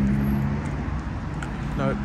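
Steady outdoor urban background noise with a constant low hum.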